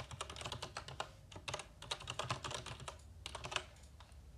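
Typing on a computer keyboard: a quick run of keystrokes that stops shortly before the end.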